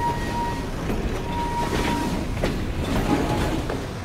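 Railway train rolling past with a steady rumble and clatter; a high steady tone sounds twice, briefly, in the first two seconds.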